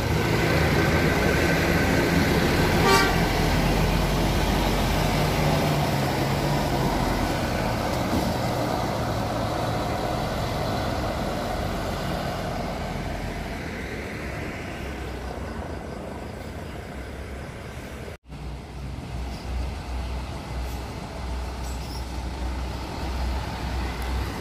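Intercity coach buses' diesel engines passing close and pulling away, loud at first and slowly fading, with a brief horn toot about three seconds in. After a sudden cut, another bus engine runs quieter with a low pulsing.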